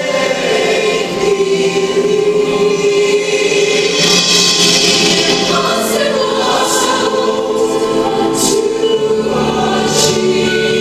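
Large massed mixed choir of school singers, male and female voices, singing on stage and holding long sustained notes that move to new pitches partway through.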